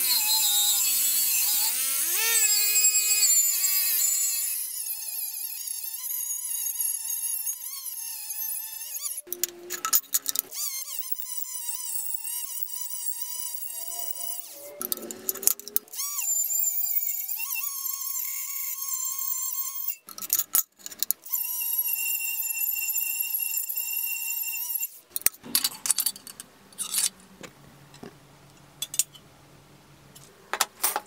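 Cordless drill spinning a wire wheel brush against a rusty steel knife blade to strip the rust. The motor's whine wavers in pitch under load over the scratch of the wires. It stops and restarts three times, then stops about 25 seconds in.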